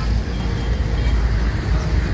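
Steady street traffic noise with a heavy low rumble.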